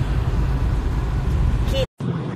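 Steady low rumble of road and engine noise inside a moving car's cabin, cutting off suddenly near the end.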